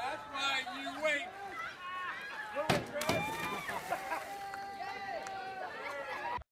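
People's voices calling and shouting without clear words. Two sharp knocks sound about a third of a second apart, roughly halfway through.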